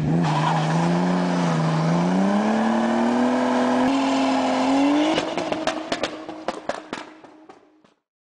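Car engine sound effect revving up, its pitch climbing steadily for about five seconds, then a run of sharp crackles as it dies away and cuts off near the end.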